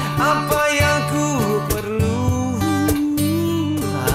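Acoustic band performance of a slow pop ballad: a male voice singing over acoustic guitar, with a cajon keeping the beat. The singer holds one long note about three seconds in.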